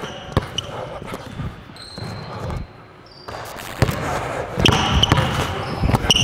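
A basketball being dribbled on a hardwood gym court, with irregular bounces and a brief lull a little before the middle.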